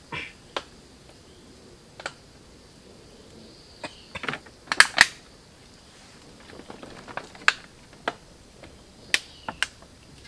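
Irregular sharp clicks and knocks of bamboo poles and rope being handled on a bamboo raft, the loudest a close pair about five seconds in, over a faint steady high tone.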